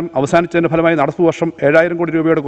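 A man speaking steadily into a microphone, reading a formal speech, with no other sound.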